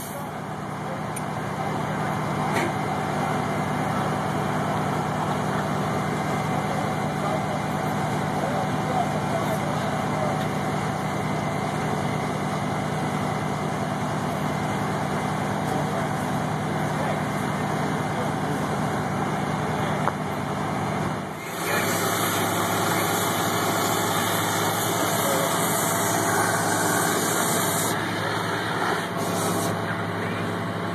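Fire engine's diesel engine running steadily, a constant low drone. About two-thirds of the way through, the sound shifts to a lower hum with a loud, steady hiss lasting several seconds.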